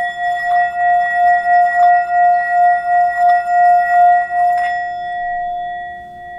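A small hand-held metal singing bowl is struck and then played around its rim with a wooden striker, giving a sustained ringing tone with a steady wavering pulse. About four and a half seconds in the rubbing stops and the tone rings on, slowly fading.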